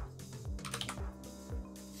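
Computer keyboard keys being typed in a few quick clicks, over quiet background music with a steady beat.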